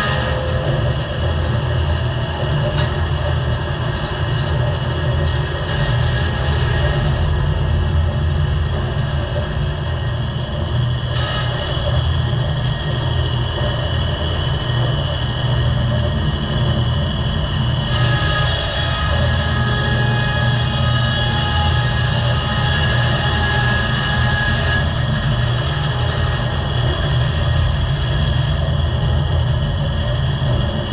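Circle sawmill's diesel power unit and drive running steadily with a heavy low rumble. A brighter, higher-pitched hiss joins from about 18 to 25 seconds in.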